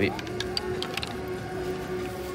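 Scattered light clicks and ticks at irregular spacing, over a steady faint hum.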